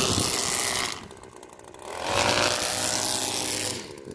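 Gas-powered string trimmer being throttled up and let back to idle: it runs at speed, drops to idle about a second in, revs up again for nearly two seconds, then falls back to idle near the end.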